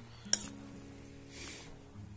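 A metal ladle clinks sharply once against a metal cooking pan while stirring a thin, milky mixture, followed by a soft brief scrape about a second later. Soft background music with held notes runs underneath.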